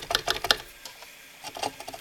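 Large copper-wound output choke rattling and clicking as a finger wiggles it, quick clicks in the first half second and a few more about a second and a half in: the inductor has come loose from the inverter's circuit board and is no longer connected.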